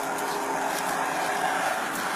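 Steady rushing noise with a low steady hum from idling patrol vehicles, picked up on a police body-worn camera's microphone.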